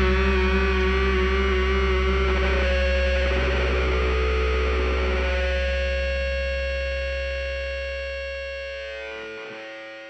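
Distorted electric guitar ringing out through effects pedals as held, sustained tones over a low bass note, with no drums, slowly fading away at the end of a rock song. The low bass note cuts off near the end.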